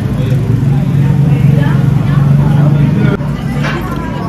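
A steady, loud low drone, such as a running engine, under background chatter; it cuts off suddenly about three seconds in.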